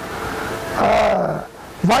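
A small white poodle-type dog growling briefly, with a low, slightly falling growl about halfway through.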